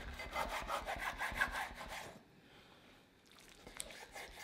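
Large kitchen knife sawing back and forth through a thick pizza crust and scraping on a wooden cutting board, in quick strokes for about two seconds, then only a few faint scrapes and a click near the end.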